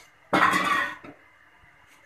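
A single short cough from a person, lasting under a second, followed by a faint click.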